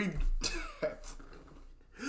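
A man's brief cough, followed by a small click just under a second in.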